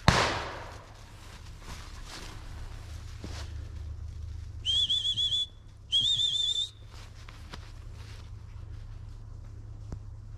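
Two short trilled blasts on a gundog whistle, about a second apart halfway through, signalling a dog out on a retrieve. A sharp thump comes at the very start.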